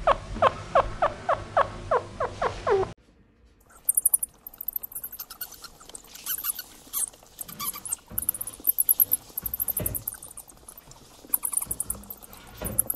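A coypu calling in a quick series of short cries that fall in pitch, about three a second, cut off abruptly after about three seconds. Then short, very high squeaks and faint rustling from a pet hamster held on a person's arm.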